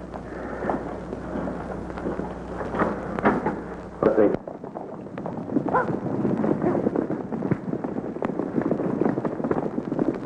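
A group of horses galloping on a dirt street, a rapid clatter of hoofbeats, with a loud burst about four seconds in.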